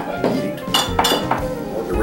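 Glass beer bottles clinking against each other on a wall shelf as one is taken down, a few sharp clinks over background music.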